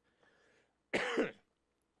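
A man coughs once, a single short cough about a second in.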